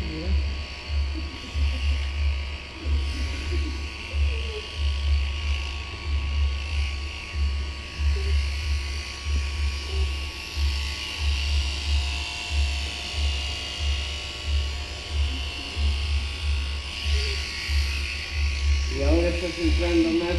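Electric vicuña-shearing machine running as the fleece is clipped off the animal's back (the saddle): an overhead motor drives the handpiece through a cable. It makes a steady buzzing whir with a low throb that swells a couple of times a second.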